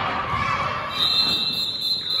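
A referee's whistle blown once, about a second in: one steady high note lasting just over a second, over background noise from the court and crowd.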